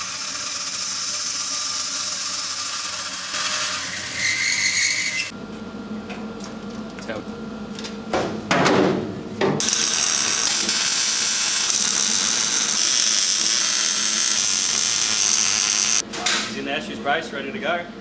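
A horizontal metal-cutting bandsaw runs steadily through square steel tube for about five seconds. After a short stretch of other workshop noise, a MIG welder gives a loud, even crackling hiss for about six seconds as the cab's cross-bracing is welded in.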